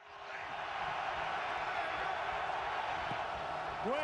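Football stadium crowd noise heard through a TV broadcast, a steady loud din that fades in quickly at the start.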